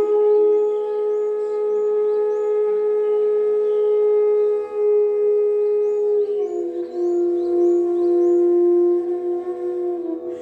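Bamboo bansuri in E playing Raag Manjari in long, held notes. It sustains one note, then slides down to a lower note about six and a half seconds in and holds it until near the end.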